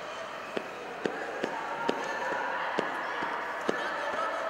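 A few sharp slaps or knocks, about six at irregular intervals, over the steady background noise of a large sports hall during a grappling match on the mat.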